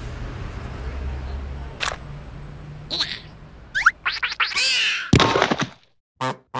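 Cartoon sound effects: a low steady rumble, then a few clicks, swooping whistle-like glides and a whoosh, ending about five seconds in with a loud thunk that rings briefly as a plastic dome comes down over the larva.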